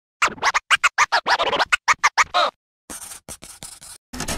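Hip-hop turntable scratching: a fast run of short, chopped strokes that bend up and down in pitch, then a quieter, thinner run of short cuts after a brief gap about two and a half seconds in.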